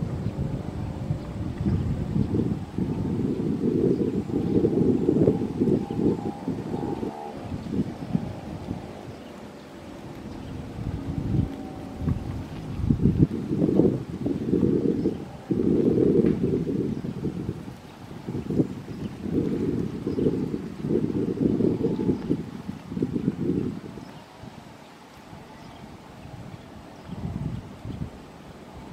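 Wind buffeting the microphone in irregular low gusts that swell and die away every second or two, with the faint hum of a distant approaching jet airliner's engines behind it.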